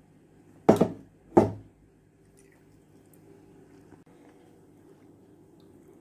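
Two sharp knocks of kitchen utensils, about two-thirds of a second apart, then only a faint steady hum.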